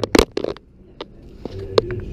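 A few sharp clicks and knocks, most of them in the first half-second, then one about a second in and one near the end: handling noise from the camera being moved against the crown's window.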